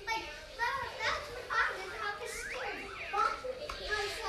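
Small children's voices: wordless chatter, babble and short high-pitched calls of toddlers at play.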